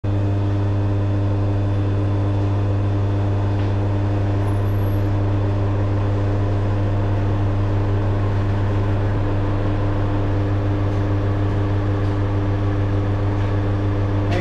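A steady low hum that holds the same pitch and loudness throughout.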